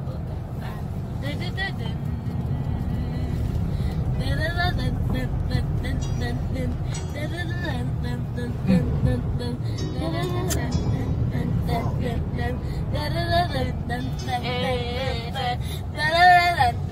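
Steady low road and engine rumble inside the cabin of a moving Nissan Navara pickup, with music and voices over it.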